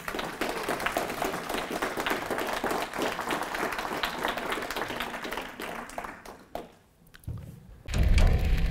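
An audience applauding in a hall, with a little laughter at the start; the clapping dies away after about six and a half seconds.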